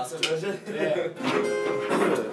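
Acoustic guitar strummed casually, a chord ringing on in the second half, with voices over it.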